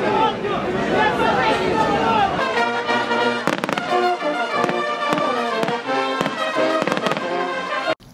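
Voices of a dense festival crowd. From about two seconds in, music plays with a series of sharp firecracker bangs going off over it.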